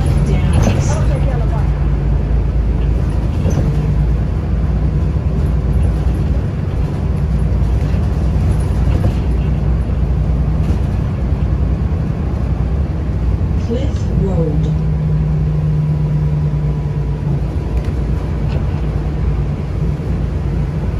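A car driving on snowy roads: a steady low rumble of engine and tyres, with a constant low hum.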